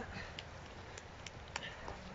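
Footsteps of fell runners climbing a wet grassy hillside, a few irregular sharp taps and scuffs of shoes over a steady low rumble.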